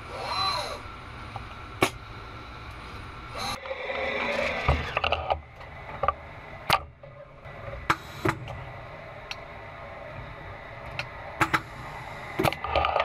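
Automated production-cell machinery at work: a steady hum with sharp mechanical clicks every second or two, and a brief motor whine that rises and falls just after the start.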